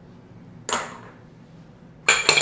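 A wire whisk clinks once against a stainless steel mixing bowl of batter, about two-thirds of a second in, with a brief ringing tail.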